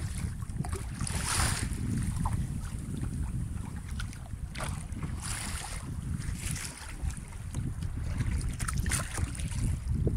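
Wind buffeting the microphone on open water, a steady low rumble, with the splash of kayak paddle strokes and lapping water coming through now and then.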